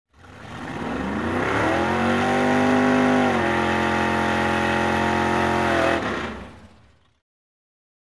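An engine revving up: its pitch climbs over the first couple of seconds, then holds high with a small dip about three and a half seconds in. It fades in from silence and fades out about seven seconds in, like a sound effect laid over the titles.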